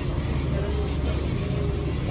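Steady low rumble of background noise with indistinct voices mixed in.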